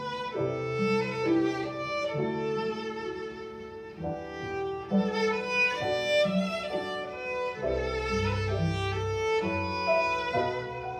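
Live chamber trio of violin, cello and grand piano playing a melodic instrumental piece, the violin carrying the tune over cello and piano, with a deep low note entering about eight seconds in.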